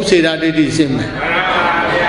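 Speech only: a man's voice preaching in Burmese in a sing-song, chant-like cadence, with long drawn-out, wavering vowels.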